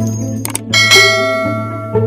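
A subscribe-button sound effect: a couple of quick clicks, then a bright bell ding that rings out and fades over about a second, over background music.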